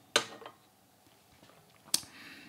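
A small porcelain tasting cup set down on a bamboo tea tray: a short knock just after the start that dies away within half a second. A single sharp click follows near the end.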